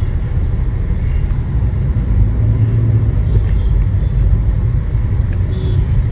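Steady low rumble of a Hyundai car's engine and road noise, heard from inside the cabin while driving in heavy traffic.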